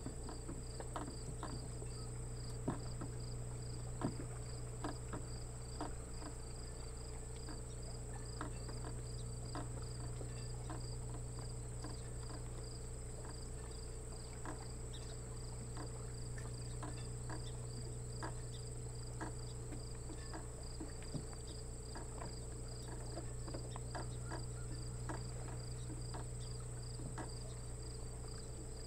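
Insects singing: a steady high-pitched trill together with a regular pulsed chirp, about two to three pulses a second, over a steady low hum and scattered soft ticks.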